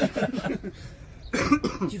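A person coughs once, about a second and a half in, between snatches of speech.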